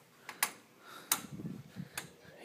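Several sharp clicks and taps, with rustling between them, as large leaves of potted plants are pushed aside and brush past.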